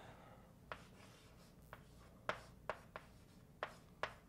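Chalk writing on a blackboard: about six faint, short taps and strokes at irregular intervals as letters are formed.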